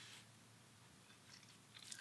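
Near silence: room tone, with a faint scratch of a pen on paper late on.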